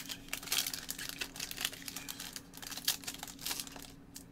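The plastic wrapper of a trading-card pack crinkling and crackling in gloved hands as it is opened: a dense, irregular run of small crackles. A faint steady hum sits underneath.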